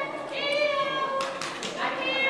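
A woman calling a dog in a high, drawn-out sing-song voice: one long call through most of the first second, then another rising call near the end.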